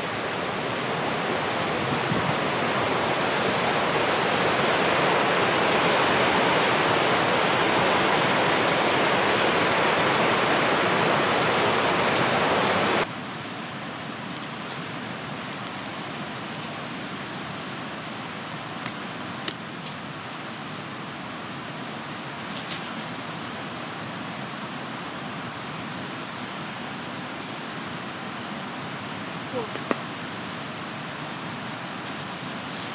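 Fast mountain stream rushing, loud and steady. After about 13 seconds it drops suddenly to a quieter, more distant rush with a few faint clicks.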